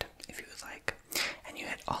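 A man whispering close to the microphone, with a sharp click just under a second in.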